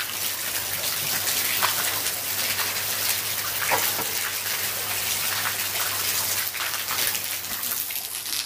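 Water pouring from a white PVC pipe into a catfish pond, a steady splashing rush, with a low steady hum underneath.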